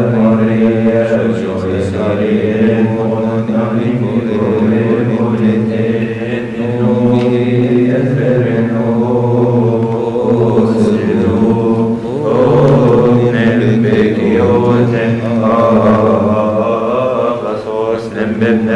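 Coptic liturgical chant: voices singing a slow, continuous hymn with long held notes.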